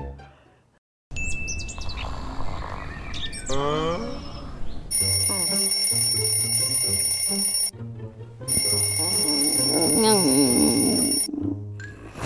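Cheerful background music with birds chirping, then a wake-up alarm ringing in two long bursts of about three seconds each, with a short break between them.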